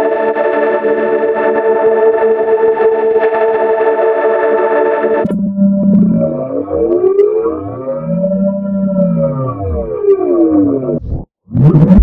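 Logo jingle music warped by stacked audio effects: a sustained distorted chord held for about five seconds and cut off abruptly, then tones sweeping up and down in crossing arcs, with a brief dropout just before the end.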